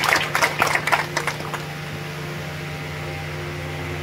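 Steady low electrical hum of several even tones, mains hum through the public-address system, following a few short clicks and crackles in the first second and a half.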